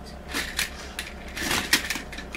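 Hard plastic clicking and rattling from a Jollibee Jolly Go Round kiddie-meal carousel toy as it is turned by hand at its top, in two quick clusters of clicks, about half a second in and again about a second later.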